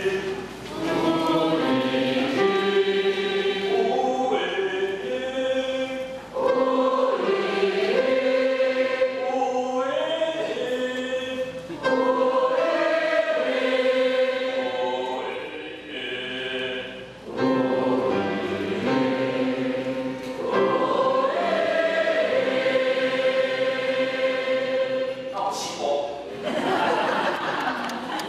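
A choir singing a hymn under a conductor, phrase by phrase, with brief pauses between the sung lines.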